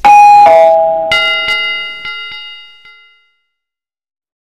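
Notification-bell sound effect: a loud two-note falling ding-dong chime, then a bell struck several times in quick succession, fading out after about three seconds.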